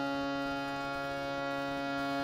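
Harmonium holding one steady reedy note with no change in pitch.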